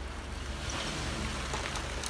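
2011 Jeep Wrangler's 3.8-litre V6 running low and steady as the Jeep creeps forward, under a steady wet hiss of tyres on a slushy gravel lot.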